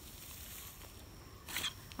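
Faint scraping and rustling of a shovel turning a compost pile, loose compost falling back onto the heap.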